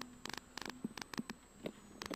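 Faint electrical hum and static with scattered short clicks and crackles, the low background of the in-car recording between pace calls; no engine or road noise stands out.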